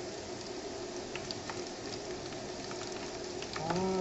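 Fresh egg noodles deep-frying in hot oil: a steady sizzle with scattered small crackles. The oil is hot enough that the noodles puff up quickly and turn airy and crisp.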